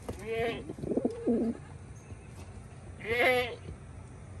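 Quavering bleats from a farm animal: two calls about three seconds apart, with a lower, shorter call about a second in.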